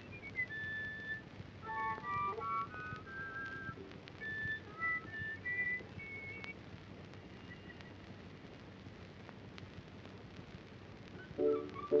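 A melody whistled in single clear high notes, stepping up and down for about six seconds before fading. Near the end a louder piece of music with fuller, lower notes starts.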